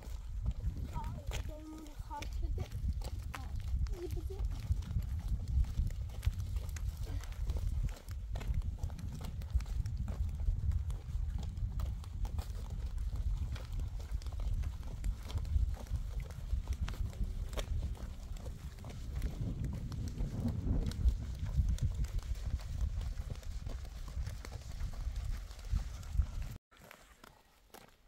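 Footsteps walking on a rough road surface, a steady patter of steps over a continuous low rumble on the microphone. A few brief faint voices come in the first few seconds.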